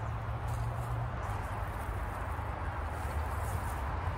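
Steady low rumble of distant highway traffic, with faint rustling as a dried pepper plant is pulled up out of the garden soil.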